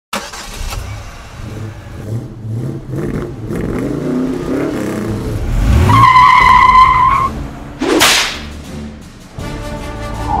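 A car engine revs up and falls away, then a steady high squeal holds for about a second. A sharp whoosh follows, and theme music starts just before the end.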